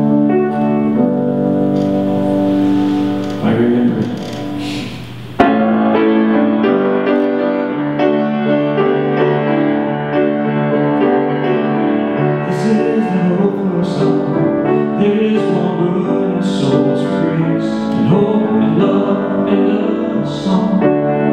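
Piano playing slow, held chords as a lead-in to a song's chorus. About five seconds in the sound changes abruptly to a fuller, busier piano part that carries on.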